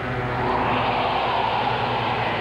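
Sea-rescue ambience: a steady rushing wash, like surf or wind, swelling about half a second in over a low steady hum.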